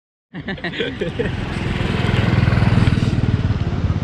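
A motorcycle engine running with a fast, even beat, starting abruptly about a third of a second in and growing a little louder over the next two seconds. A few words from a voice come in near the start.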